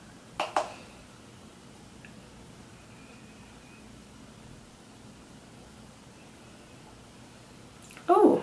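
Two light clicks about half a second in from handling a makeup brush and highlighter compact, then faint steady room tone.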